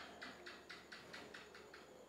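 Near silence with a faint, rapid series of ticks, about four or five a second, that stops shortly before the end.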